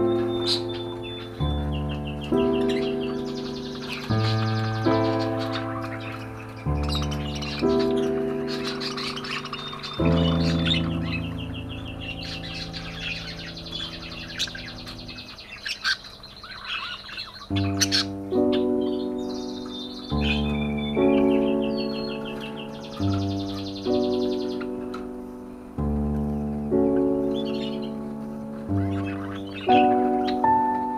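Slow, gentle piano music, chords struck every second or two and left to fade, with budgerigars chirping and warbling over it. The piano thins out for a few seconds about halfway through while the chirping goes on.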